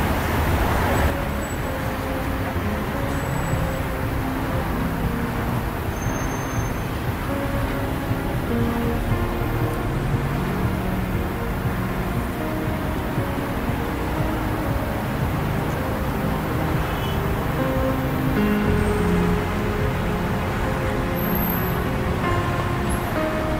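Steady city traffic rumble, with faint music and its short melodic notes heard over it.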